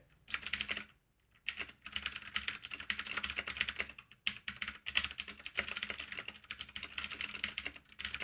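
Typing on an Ajazz K680T mechanical keyboard with blue switches: a fast, continuous run of higher-pitched key clicks, with a short pause about a second in.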